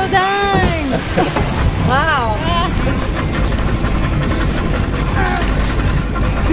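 A woman's long, held yell that drops in pitch and breaks off about a second in as she is pulled off the wakeboard boom into the water, then a short rising-and-falling cry about two seconds in. Under it runs the steady drone of the boat's motor with rushing water and wind.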